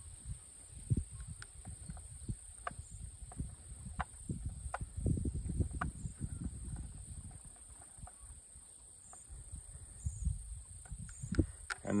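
Small scattered clicks and taps over a low handling rumble, as a small screwdriver tightens a wire into a screw terminal connector inside a plastic tipping-bucket rain gauge.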